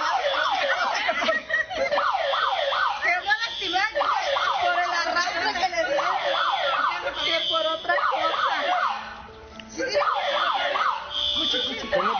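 Electronic siren in a fast yelp, its pitch sweeping up and down a few times a second. It drops out briefly about nine seconds in, then starts again.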